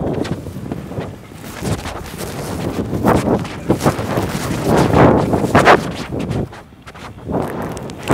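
Battery blower fans of inflatable sumo suits running with a steady rushing noise, mixed with irregular rustles and bumps of the inflated fabric as the wearers walk.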